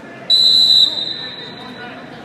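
A whistle blown once, most likely a referee's: a sudden, high, steady blast of about half a second a moment in, trailing off over about another second in the large hall.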